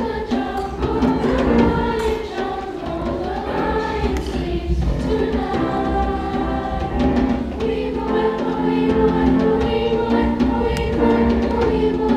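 Youth school choir singing sustained, held notes, accompanied by a grand piano.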